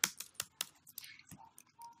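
Computer keyboard keys clicking in a quick, irregular series as text is deleted in a code editor. The first few strokes are the loudest and the rest are fainter.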